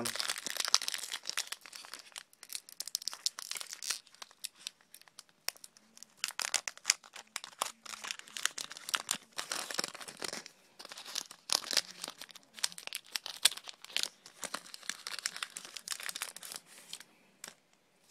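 Foil wrapper of a Pokémon Dragons Exalted booster pack crinkling in the hands in repeated bursts as it is flexed and torn open.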